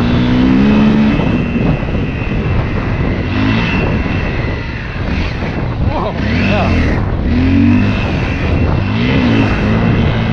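Dirt bike engine running under way, its pitch rising and falling again and again with throttle and gear changes. The sound is picked up on a helmet-mounted camera.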